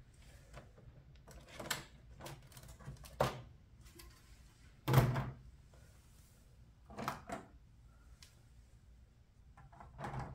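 LEGO road and sidewalk plates being pulled off a baseplate layout and set down by hand: a handful of short plastic knocks and clatters, the loudest about five seconds in.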